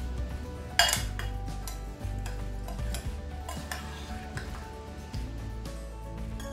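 Steel spoon stirring hot mashed rice in a glass bowl, knocking and clinking against the glass several times, the loudest knock about a second in.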